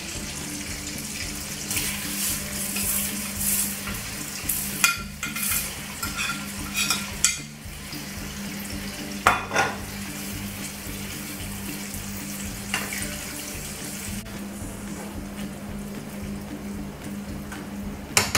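Butter-and-sugar caramel bubbling and sizzling in a frying pan as sliced apples are tipped in and stirred, with a spoon knocking and scraping against the pan several times, over a steady low hum.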